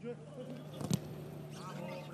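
On-pitch sound of a football match in an empty stadium: players shouting to each other, with a sharp knock of a ball being kicked about a second in, over a steady low hum.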